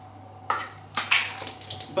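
Clatter and sharp knocks of small hard objects being handled and set down on a hard surface, starting about half a second in, with the loudest knocks around a second in.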